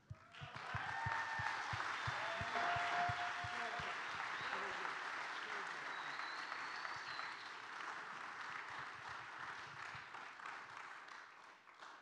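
Congregation applauding as the teens leave the stage, starting about half a second in and slowly dying away near the end, with a few voices calling out over the clapping.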